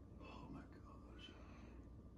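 Near silence with faint breathy, whisper-like sounds in the first second or so: a man breathing through his open mouth.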